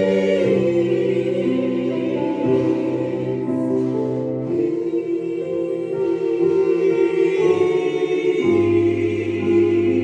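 Gospel choir singing slow, held chords over a Yamaha Motif synthesizer keyboard, the harmony shifting every second or two. A deeper bass note comes in near the end.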